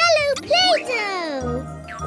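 Children's cartoon music with a jingle, under a cartoon character's high, wordless vocal sounds that glide up and down, the last one a long falling glide.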